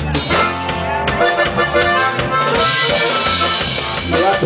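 Live norteño band playing an instrumental break: accordion carrying the melody over drums, bass and guitar, with a cymbal wash in the second half.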